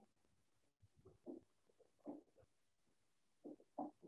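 Near silence broken by a few faint, muffled murmurs of a voice coming over a video call, in short bursts about a second in, two seconds in and near the end.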